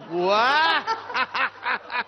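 A man's voice: one long drawn-out exclamation that rises and then falls in pitch, followed by a few short chuckles of laughter.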